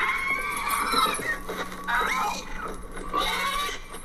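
A young dragon's screeching cries from the show's soundtrack, several rising and falling squeals one after another, over background music.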